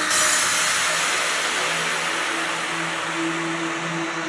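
Electronic trance track in a drumless passage: a loud wash of white noise at its height slowly fades away. Sustained synth notes come in beneath it about two seconds in.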